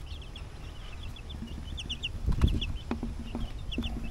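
Two-week-old chicks peeping: short, high, falling chirps repeated in quick little runs. A few soft knocks come about halfway through.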